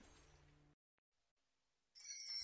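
Near silence: the last faint hiss of a fading recording dies out about three-quarters of a second in, leaving complete silence.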